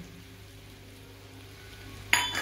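Faint, steady sizzle of mashed potato filling frying in oil in a kadhai on a gas stove, with a low steady hum underneath.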